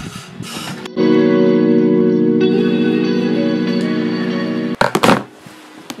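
Belt-driven sewing machine running at a steady speed as a seam is sewn, for about four seconds, then stopping abruptly, followed by a few short clicks.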